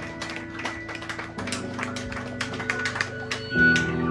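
Live metal band playing: quick, sharp drum strokes over sustained electric guitar and bass chords, which change about a second and a half in and again near the end.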